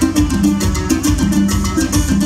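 Live dance band playing an instrumental huapango: bass notes and percussion keep a steady, even beat under a melody line.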